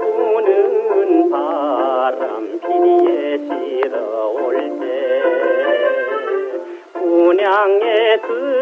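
A male trot singer sings with a wide vibrato over a small band accompaniment. It is an old 1962 LP transfer, thin-sounding with no bass and dull highs.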